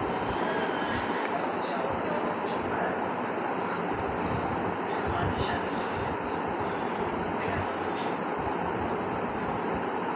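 A man talking, partly buried under a steady, even background noise.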